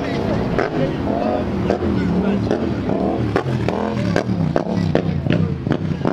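Voices of people talking close by, not the narrator's, over a car engine running in the background, with a few sharp clicks.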